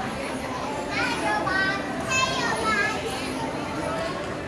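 Young children's voices and crowd chatter in a busy public space, with high-pitched children's calls about a second and again about two seconds in.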